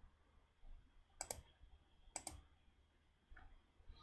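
Two sharp computer mouse clicks about a second apart, with a few fainter clicks, against near silence.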